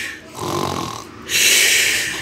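A person voicing pretend snores: a low rasping snore on the in-breath about half a second in, then a long hissing breath out.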